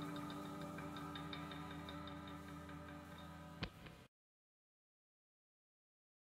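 Soft ambient background music: held tones with a regular light ticking beat, fading down. There is a single sharp click shortly before the music cuts off into silence about four seconds in.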